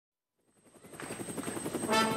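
Helicopter rotor fading in and growing louder, with a fast, even chop and a thin high steady tone above it.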